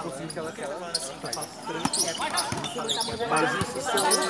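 Volleyball being struck by players' hands during a rally on a hard court: a few sharp slaps, the clearest about two seconds in and near the end, over the voices of players and onlookers.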